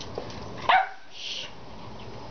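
A dog barks once, a short sharp bark falling in pitch, about two-thirds of a second in, during trick training.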